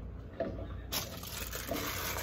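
A steady rushing hiss like running water, most likely a kitchen tap, starts suddenly about a second in, after a brief short vocal sound.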